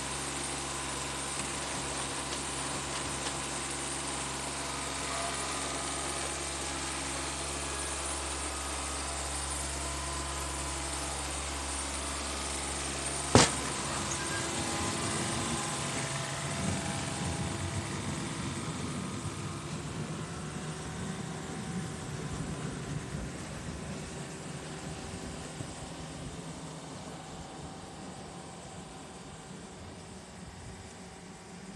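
John Deere F935 front mower's diesel engine idling steadily. A single sharp clack about halfway through, then the engine picks up speed as the mower pulls away and fades into the distance.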